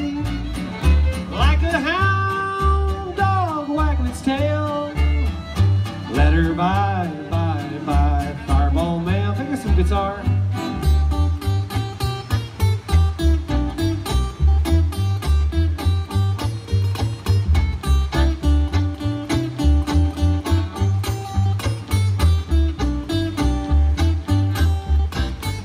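Live bluegrass band playing an instrumental break with no singing: a fiddle leads with sliding, bending notes, over acoustic guitar, accordion and an upright bass keeping a steady pulsing beat. About ten seconds in, the lead gives way to quicker, evenly repeated notes.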